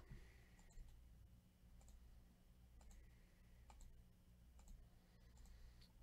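Near silence with faint computer mouse clicks, a dozen or so spread out, several coming in quick pairs, over a low steady electrical hum.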